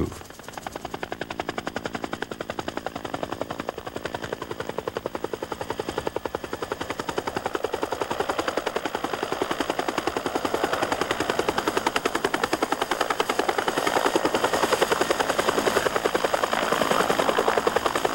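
Bell UH-1 ('Huey')-type two-bladed helicopter flying with an underslung load, its rotor beating in a rapid, even thudding rhythm. It grows steadily louder as it comes in low toward the landing site and is loudest near the end.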